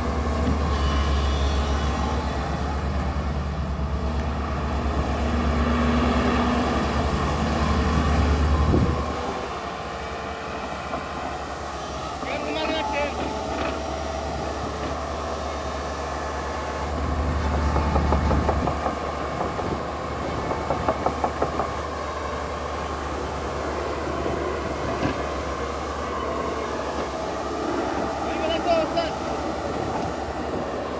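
Tata Hitachi crawler excavator's diesel engine running under hydraulic load as the machine swings and digs its bucket into earth. The low drone is heaviest for the first nine seconds and again briefly a little past halfway, easing in between, with a few short high squeaks over it.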